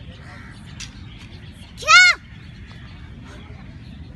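A young girl's single short, loud kiai (karate shout) about two seconds in, its pitch rising and then falling, over faint outdoor background noise.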